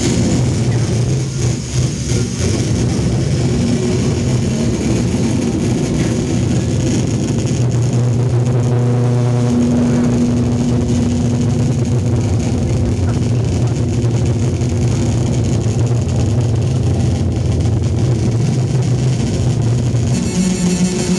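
Loud, steady droning noise from a homemade metal-bodied electric guitar played through a Marshall amplifier, a deep hum holding throughout with a higher held tone appearing briefly near the middle.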